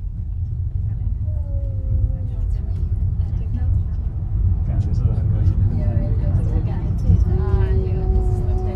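Heidelberg Bergbahn funicular car running down its track through a tunnel, heard from inside the car: a steady low rumble of wheels on rails, with voices faint over it.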